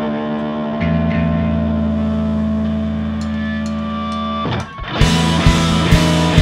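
Live rock band with distorted electric guitar and bass holding long sustained chords, changing chord about a second in. After a short break the full band comes back in with drums keeping a steady beat about five seconds in.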